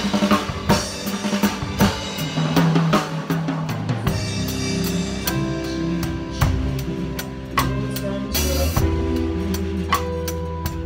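Live band playing a song, led by a drum kit played with sticks: steady bass drum, snare and cymbal hits. Other instruments hold sustained notes from about four seconds in.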